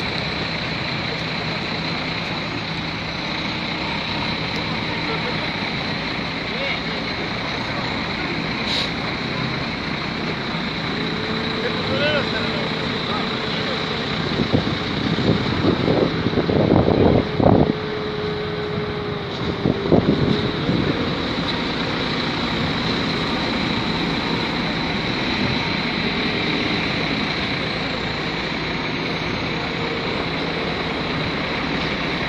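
Dump truck engine running close by, a steady rumble throughout. Louder voices break in a little past the middle, and a steady hum joins for about ten seconds around the same time.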